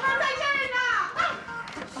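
Speech: a woman calling out to someone, with a long falling call about a second in, over background music.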